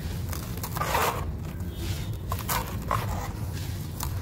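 Dry sand-cement lumps crushed in bare hands, the gritty crumbs pouring into a plastic bucket, with a burst of crumbling about a second in and several short crackles later.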